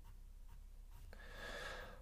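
Quiet room tone with a faint low hum. About a second in comes a soft breath of under a second, just before speech resumes.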